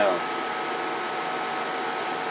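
Linear amplifier's electric cooling fan running steadily, a constant whir with a faint steady whine in it.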